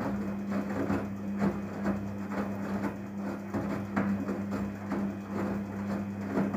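Daewoo DWD-FT1013 front-loading washing machine turning its drum in a wash cycle: a steady motor hum under irregular swishing and thudding of wet laundry tumbling in water, several times a second.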